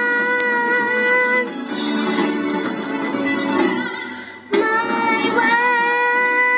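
A young girl sings into a microphone, holding a long note, then pauses briefly while the accompaniment continues, and comes back in with another long held note about four and a half seconds in.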